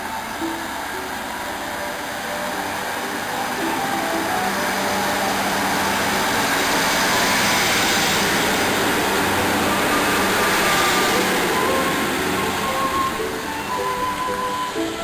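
A diesel multiple unit pulling out of the platform, its engine and wheel noise building to a peak as the coaches pass close by, then easing off. Background music plays throughout.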